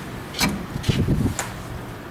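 Platform lift's entrance door being opened by hand: a latch click, a short run of low knocks and rattles as the door swings, and a second click about a second and a half in.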